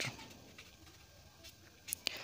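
Ballpoint pen scratching faintly on paper while a short word is handwritten, with a small sharp click near the end.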